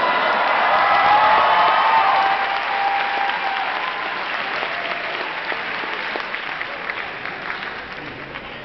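Large audience applauding and cheering, loudest over the first two seconds and then slowly dying down.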